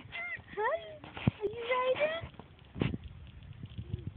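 A young child's high-pitched voice making short squeals and babbling sounds that rise and fall in pitch. Two sharp knocks come in between, one about a second in and one near three seconds.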